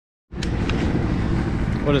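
A steady low rumble of outdoor background noise begins suddenly just after the start, and a man's voice comes in near the end.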